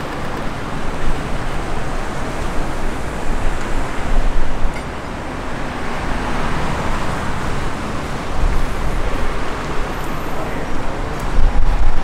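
City street traffic: cars driving past on the road beside the footpath, one passing close about six seconds in.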